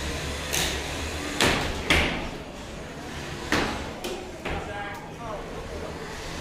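3lb combat robots fighting in an arena box: about five sharp metallic hits and clatters from weapon strikes and flying parts, over a steady low hum.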